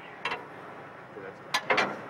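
Heavy metal parapet panel seating onto its steel mounting plate: a light click early, then a quick cluster of sharp metal clanks near the end as it drops into place.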